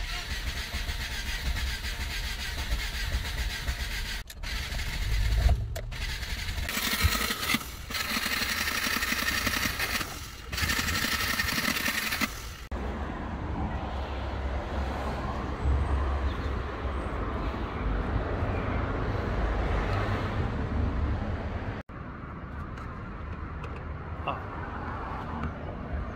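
Rover K-series engine cranking on its starter motor without catching, in several short takes joined by abrupt cuts. It will not fire because the cam timing is 180 degrees out.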